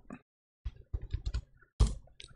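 A quick, irregular run of computer keyboard and mouse clicks, with one louder click near the end.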